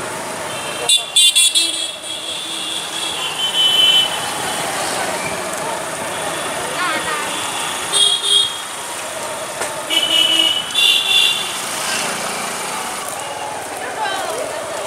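Vehicle horns on a busy street beep in short blasts several times: about a second in, near eight seconds and twice around ten to eleven seconds. Traffic noise and people's voices run underneath.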